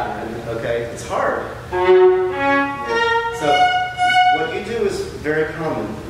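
Viola playing a short phrase of held notes that step about and rise to a high note partway through, framed by a voice before and after.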